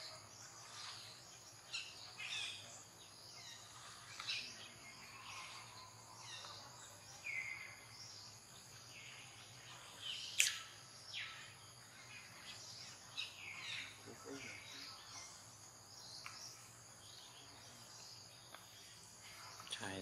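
Faint outdoor ambience: a steady high insect drone with short bird chirps scattered through it, and one sharp click about ten seconds in.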